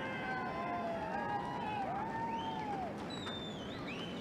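Faint distant voices calling out, their pitch rising and falling, over a steady low background noise.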